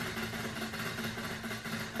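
Tabletop prize wheel spinning fast: a steady, even rattle as its pointer runs over the pegs on the rim.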